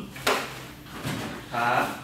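A shopping bag handled on a table: one sudden short knock-and-rustle about a quarter second in, then faint handling noise.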